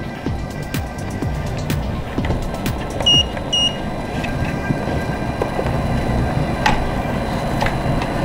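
Clicks and rustles of handling as a collapsible softbox is fitted onto an Interfit Honey Badger studio strobe. About three seconds in, the strobe gives two short electronic beeps about half a second apart. Background music plays underneath.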